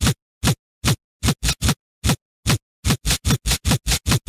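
A techno DJ mix chopped into short stuttering bursts separated by dead silence, irregular at first and then tightening into an even roll of about five bursts a second near the end, in the manner of a DJ stutter or loop-roll effect.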